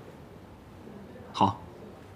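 A single short vocal sound from a man, a brief grunt-like utterance about one and a half seconds in, over a faint steady room hush.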